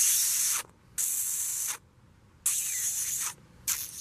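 Four short bursts of hissing, each under a second long, with brief gaps between them.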